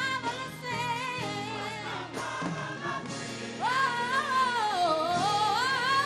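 Gospel choir singing with a female soloist on microphone, the lead voice wavering on held notes. The singing swells louder about three and a half seconds in.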